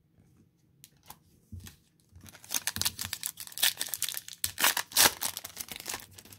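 The plastic wrapper of a 2008 Topps Finest football card pack being torn open and crinkled, after a few faint clicks. The tearing is a dense crackle that starts about two seconds in and lasts about three seconds.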